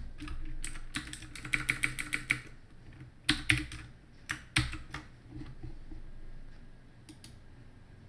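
Typing on a computer keyboard: a quick run of keystrokes about a second and a half in, then a few separate, louder key presses.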